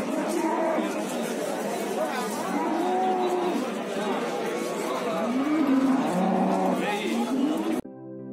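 Cattle mooing several times, long arching calls, over background chatter of voices. Near the end the sound cuts abruptly to soft synthesizer music.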